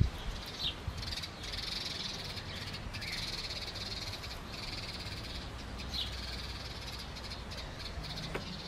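A high, rapid trill from a calling animal, running in long stretches with brief gaps, with a few short falling bird chirps over it. A sharp knock right at the start is the loudest sound.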